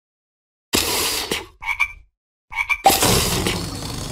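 Cartoon frog croaking sound effect: a raspy croak about a second in, two short chirpy calls, then a longer croak near the end.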